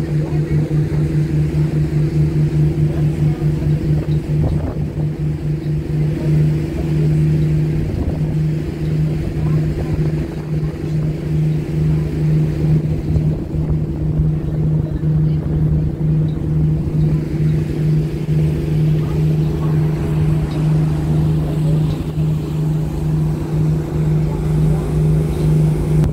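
Boat engine running steadily, a low hum with a slight pulsing beat, over the rush of water and wind.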